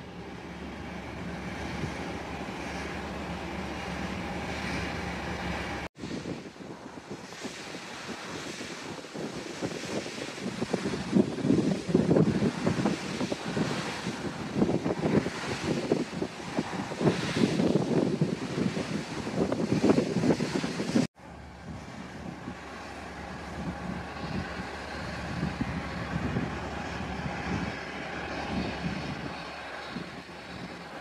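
Offshore well-test flare burner on its boom burning well fluids, with a steady roar. From about 6 to 21 seconds in, the sound is louder, with irregular crackling and rumbling. The sound drops out abruptly at cuts about 6 and 21 seconds in.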